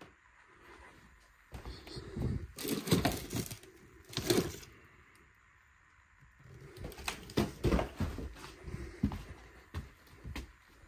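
Scattered knocks and rustles of someone moving about and handling things in a room, in two clusters: one from about a second and a half to four and a half seconds in, another from about seven to nine and a half seconds in, with a quiet gap between.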